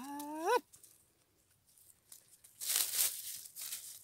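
A drawn-out rising 'aah' from a voice at the start. About two and a half seconds in comes a rustling, crackling noise lasting about a second, like movement or handling among dry forest-floor vegetation.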